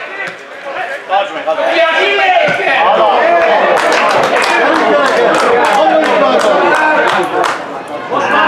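Several voices talking and calling over one another, loud and close. A run of sharp clicks comes through in the second half.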